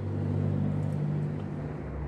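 Low, steady motor hum, its pitch dropping near the end.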